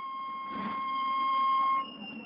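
Wind band holding one long high note that swells louder, then moving to a new note near the end.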